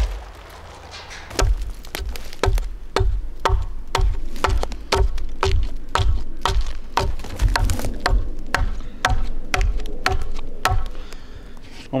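Hatchet hewing the trunk of a freshly felled sapling, a steady run of sharp chops about two blows a second, taking off the bulk of the waste wood.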